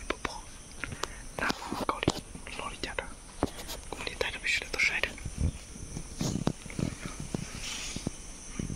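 A person whispering in short breathy stretches, with many sharp little clicks and rustles of twigs and leaves close by.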